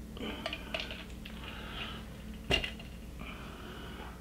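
Stainless steel cocktail shaker and glass being handled: a few faint clinks, then one sharp clink about two and a half seconds in.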